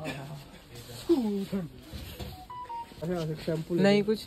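Men's voices talking, with a short electronic beep of two steady tones about two and a half seconds in.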